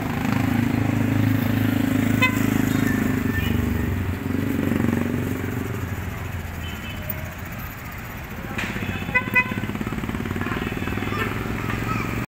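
Small motorcycle engines in passing street traffic, loudest in the first six seconds as a motorized tricycle goes by, then fading. Two short pitched beeps come about nine seconds in.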